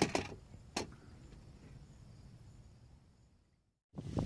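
A couple of sharp clicks or knocks in the first second, then a faint background that fades out to silence near the end.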